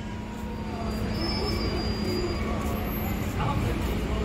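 Indistinct background voices over a steady low rumble and a faint steady hum.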